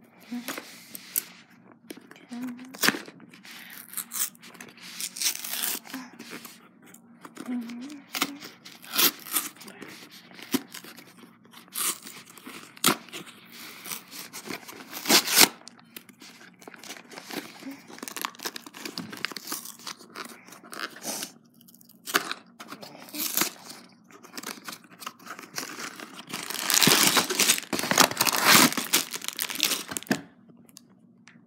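A small cardboard toy box being torn open by hand and its packaging handled: irregular tearing, crinkling and clicks. Near the end comes a longer, louder stretch of rustling.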